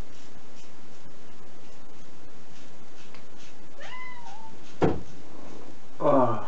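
A cat meows once, a short call that rises and then falls, a little past halfway; a single sharp knock follows about half a second later. A steady hiss runs underneath.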